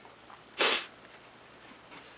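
A single short, sharp sniff about half a second in, against quiet room tone.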